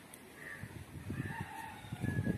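Faint bird calls: a few drawn-out notes in a row, each lasting under half a second.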